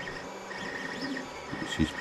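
Creality Ender 5 Plus 3D printer running a print: a steady whir with a thin whine that rises and falls in pitch as its stepper motors speed up and slow down.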